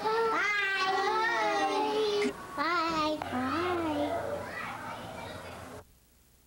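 A young child's high-pitched voice, in drawn-out sliding phrases with no clear words. It stops shortly before the end.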